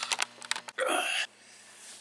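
Camera handling: a quick run of clicks and knocks as the camera is grabbed, then a short burst of noise that cuts off abruptly just over a second in, leaving quiet room tone.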